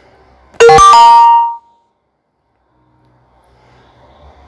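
A Messenger chat notification chime on a phone: a loud, short rising ding of a few bell-like notes, about a second long, as a chat message goes through.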